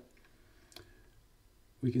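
A single sharp computer-mouse click about a third of the way in, over quiet room tone.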